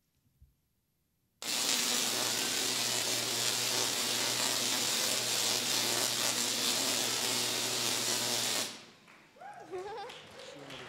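Tesla coil discharging a high-voltage arc into a performer: a loud, steady buzzing crackle with a low hum under it. It starts abruptly about a second and a half in and cuts off suddenly near the end.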